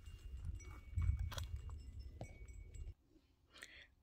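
Low rumbling noise on the phone's microphone as it is handled, with a few light clicks and faint thin high tones. It cuts off to dead silence about three seconds in.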